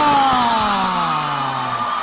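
A sports commentator's long drawn-out shout on one held vowel, sliding slowly down in pitch and breaking off near the end, as a long-range shot goes in for a goal.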